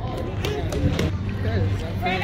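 A few sharp knocks of a soccer ball being kicked and striking the hard gym floor, over faint voices around the hall.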